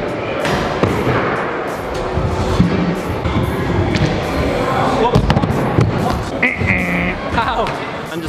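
Pro scooter wheels rolling on wooden skatepark ramps, with a series of sharp clacks and knocks from the scooter hitting the ramps and ledge, over background music.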